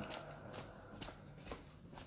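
Footsteps on stone paving, about two steps a second.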